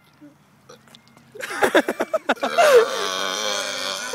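A man's voice: a few loud syllables about one and a half seconds in, running into one long, drawn-out shout with his voice dipping in pitch.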